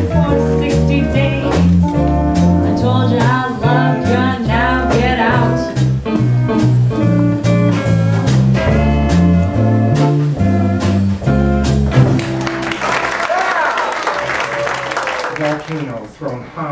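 Live blues band: electric bass, drums, steel guitar and a woman singing. About twelve seconds in the band stops and only voices and crowd noise remain.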